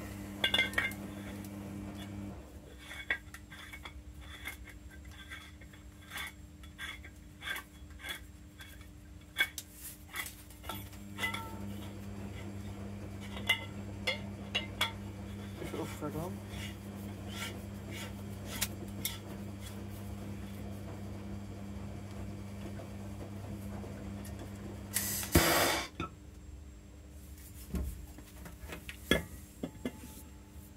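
Metal tools and fittings clinking and knocking irregularly through the first two-thirds, over a steady low hum. About 25 seconds in comes a loud burst of noise lasting about a second.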